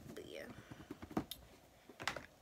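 A faint, whispered or murmured voice under the breath, with a single sharp click a little past a second in.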